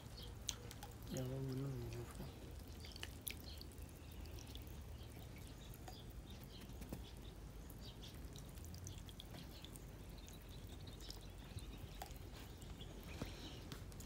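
Faint drips and small splashes of water from a plastic basket held down in pond water, with scattered light ticks.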